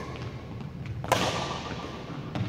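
Badminton rally: a light racket hit on the shuttlecock at the start, then a much louder, sharper racket strike about a second in that rings out in the large hall, with faint footfalls on the wooden court.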